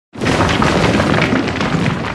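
Logo-reveal sound effect: a sudden loud boom just after the start, running on as a rumble with crackles of crumbling debris.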